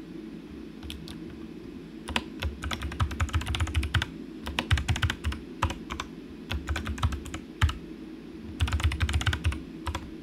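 Typing on a computer keyboard in several quick runs of keystrokes with short pauses between.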